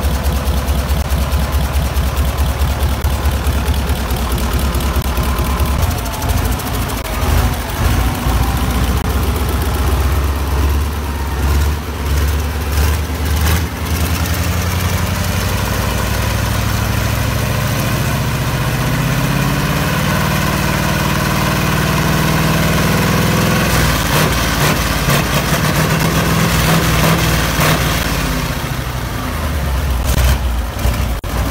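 V8 bus engine running on a test stand out of the vehicle. It idles with a steady, even firing beat, then the throttle is blipped a few times. After that the revs are raised so the pitch climbs and holds, drops back, and rises again briefly near the end.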